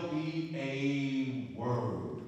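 A man's voice through a handheld microphone, drawing words out in long, held, chant-like tones with a short break about three-quarters of the way through.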